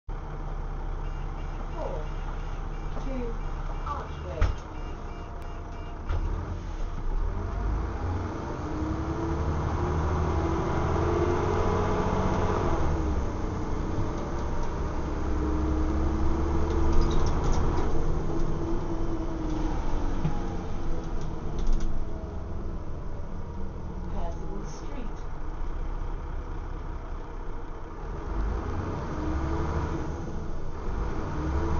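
Interior sound of a Dennis Trident double-decker bus with a Plaxton President body on the move: the engine and drivetrain run with a low hum, and their pitch rises and falls several times as the bus pulls away, accelerates and slows. A single sharp thump sounds about four and a half seconds in.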